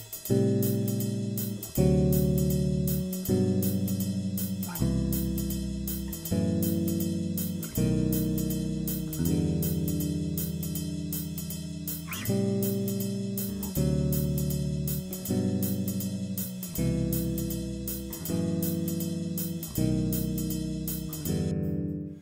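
Electric bass guitar playing three-note seventh-chord voicings through a ii–V–I progression (A minor 7, D7, G major 7, C major 7, F-sharp half-diminished, B7, E minor 7). One chord is struck about every one and a half seconds and left to ring, over a swung jazz drum backing with steady cymbal strokes. The chords stop suddenly just before the end.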